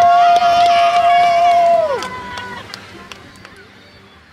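Pop song with vocals ending: a singer holds one long final note with backing voices, cutting off about two seconds in, then the music fades out.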